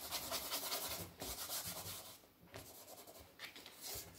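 Charcoal scratching and rubbing on paper on a drawing board in quick, repeated strokes, busier in the first couple of seconds, then fainter and more spaced out.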